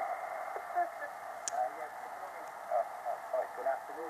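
Single-sideband voice coming from an HF transceiver's speaker on the 40 m band: a distant station talking faintly over steady band hiss, with a laugh about a second in. The voice sounds thin and narrow, cut down by the receiver's filter.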